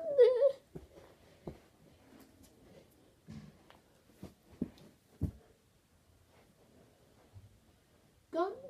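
A short, pitch-bending vocal cry right at the start, then a scatter of soft thumps and knocks a second or so apart, from a person moving about on the floor of a small room. The sounds die away after about five and a half seconds.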